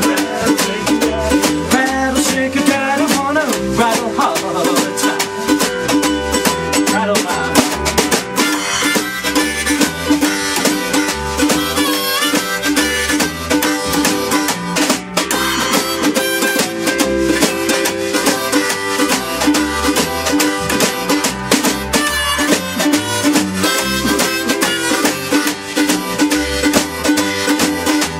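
Live swing-style instrumental break: a harmonica on a neck rack carries the melody with bent notes over a strummed ukulele, upright bass and a snare drum keeping a steady beat.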